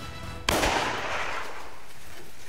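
A single hunting rifle shot about half a second in, fired at a roe buck, with a long echo dying away over about a second. The music before it stops at the shot.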